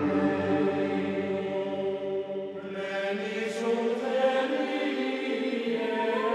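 Choir singing Gregorian-style chant in long, held notes; about halfway through the lowest voices fall away and the chord changes.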